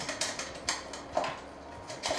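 A few light clicks and knocks of small objects being rummaged through while someone searches for a pair of scissors, quieter near the end.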